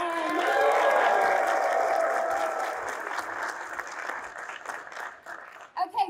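Audience applauding, loudest about a second in and slowly dying away.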